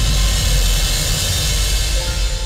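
Dramatic sound-effect hit laid over the drama's score: a deep rumbling boom with a broad rushing hiss, starting suddenly just before and held loud, slowly easing off.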